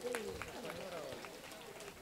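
Faint background voices from a large seated audience in a lull between a speaker's amplified phrases, with a few small clicks.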